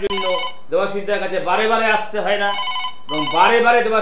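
A telephone ringing in two short trilled bursts, one at the start and one about two and a half seconds in, under a man talking.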